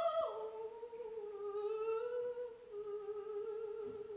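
Operatic soprano singing softly: a phrase that drops in pitch just after the start, then sustained quiet notes that fade near the end.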